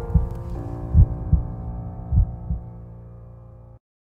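Heartbeat sound effect: paired low lub-dub thumps, three beats about 1.2 seconds apart, growing fainter. A held low music chord fades beneath them and cuts off suddenly just before the end.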